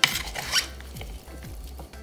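A plastic spoon tossing pasta salad in a plastic mixing bowl: a raspy scraping and rustling that is loudest in the first half-second, then softer. Quiet background music plays underneath.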